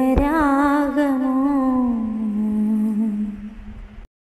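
A solo singing voice holds the final note of a Malayalam song, wavering at first, then sliding down in pitch and fading away.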